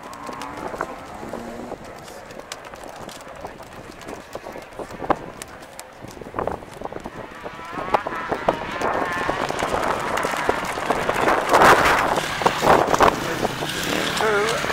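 Enduro motorcycle engine approaching and revving. It is faint at first, grows louder from about eight seconds in as the bike comes over the rise, and is loudest as it passes close by near the end.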